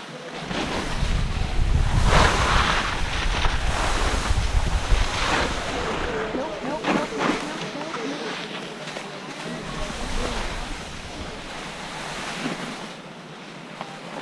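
Wind buffeting an action camera's microphone while skiing downhill, a gusty low rumble that comes and goes, with the hiss of skis sliding and scraping through soft, slushy spring snow.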